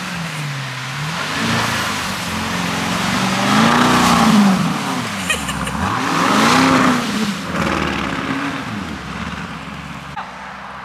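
Lamborghini Urus's twin-turbo V8 revving as the SUV pulls away on a snow-covered road. The revs climb and fall back several times, loudest about four seconds in, as traction control keeps it from breaking traction.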